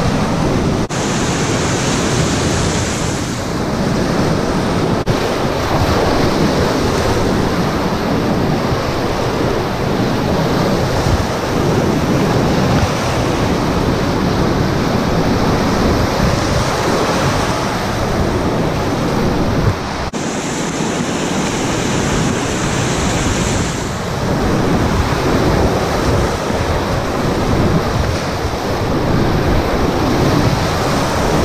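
Class IV whitewater rapids rushing, loud and steady, heard up close from a packraft running them.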